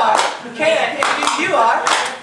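Several cast members' voices chanting in rhythm, punctuated by sharp claps about once a second.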